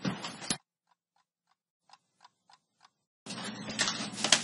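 A clock ticking faintly and evenly, about three ticks a second, over dead silence. Room noise cuts off sharply about half a second in and comes back near the end.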